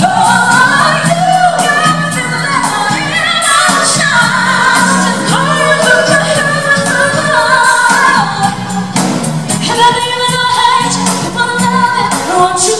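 Live pop performance: female lead vocals singing runs that slide up and down in pitch, over keyboard, guitar and bass accompaniment with backing singers.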